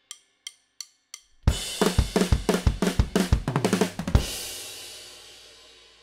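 Four drumstick clicks count in, then a drum kit plays a fast punk/hardcore beat and fill, kick and snare under cymbals, and ends on a final crash that rings out and fades.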